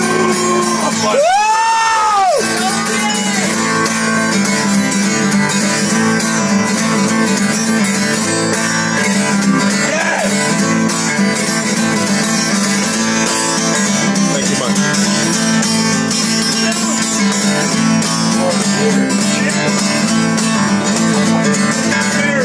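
Acoustic guitar strummed steadily, a live country-blues intro played without vocals. About a second in, a voice lets out one short rising-and-falling whoop over the guitar.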